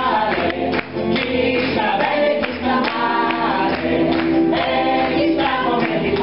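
A male lead singer and a female chorus singing the refrain of a 1939 Italian variety-theatre song, in Italian.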